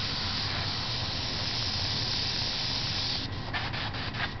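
Airbrush spraying paint: a steady hiss that breaks into short on-off spurts about three seconds in as the trigger is worked.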